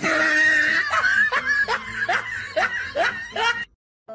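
A person laughing in a run of short bursts that stops abruptly near the end.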